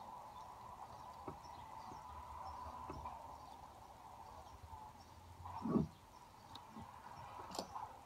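Stainless ATD extraction tool's threaded shaft being hand-wound to draw the anti-telescoping device off a spiral-wound membrane: a quiet steady hum with a few faint metallic clicks. A short falling-pitched sound comes about two-thirds of the way through.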